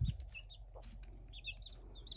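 Baby chicks peeping faintly: short, high peeps scattered through, coming more often in the second half.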